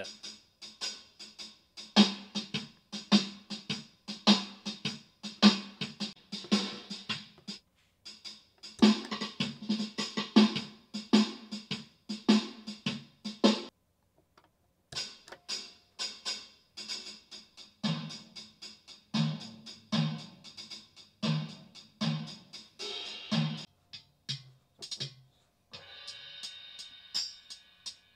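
BeatBuddy drum pedal playing sampled drum-kit beats through a small practice amp: a shuffle groove on the standard kit, stopping about halfway through. After a short gap another beat starts with heavier low drum hits, and near the end it changes to a different, softer percussion pattern.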